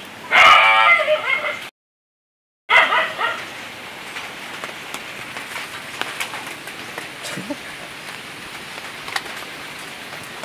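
An animal calling loudly twice near the start, the first call cut off abruptly by a second of dead silence, followed by a steady faint hiss with scattered light clicks.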